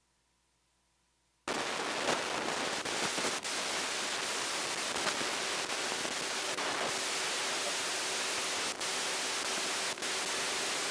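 Near silence, then about a second and a half in a loud, steady static hiss cuts in suddenly and runs on with a few faint clicks.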